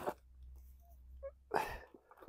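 A short, breathy burst of noise from a person, a sharp breath or sniff, about one and a half seconds in, over a faint low rumble.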